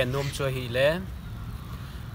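A man talking for about a second, then pausing, leaving only a steady low background rumble.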